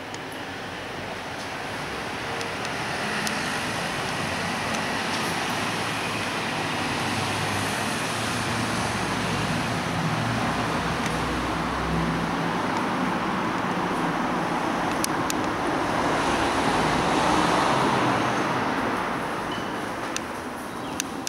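Street traffic noise: a low engine rumble around the middle, then a vehicle passing that swells to its loudest a few seconds before the end.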